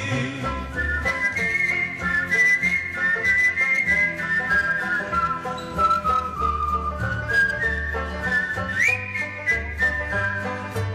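Instrumental break in a song: a whistled melody carried in long held notes over a band accompaniment with bass and a steady beat, the tune sliding upward near the end.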